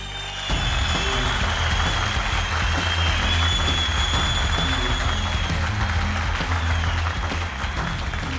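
Studio audience applauding over background music; the clapping comes in about half a second in and eases off near the end.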